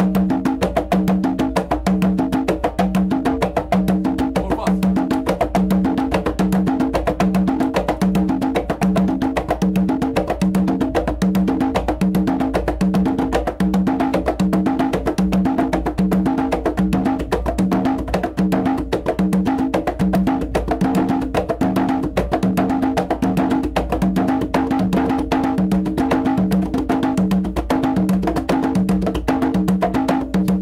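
Two conga drums played by hand in a steady, unbroken interlocking rhythm: many quick strokes with open tones on two pitches recurring at an even pace.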